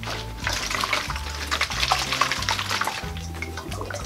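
Water swirling and draining from an upturned plastic bottle through a tornado-tube connector, splashing and gurgling into the bottle below, over background music with a steady bass line.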